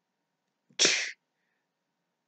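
A man sneezing once, a short sharp burst about a second in.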